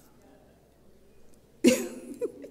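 Quiet room tone, then a single short, loud cough near the end.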